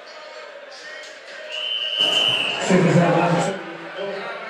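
A single steady high-pitched tone lasting about a second, the signal that starts the round of a boxing bout. It is followed by a loud burst of shouting voices from the ringside crowd.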